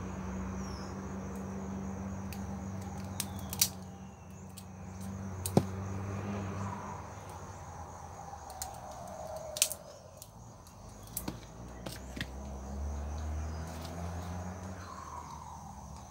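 Scissors snipping rooted shoots off a kale stalk: a few short, sharp clicks spaced several seconds apart. Underneath is a steady high insect drone, like crickets, and a low hum.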